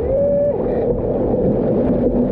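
Steady rush of wind and splashing sea water around a one-person outrigger canoe surfing downwind swells. A short steady tone rises and holds for about half a second near the start.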